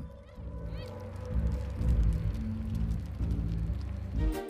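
A flock of sheep bleating, with a low rumble underneath.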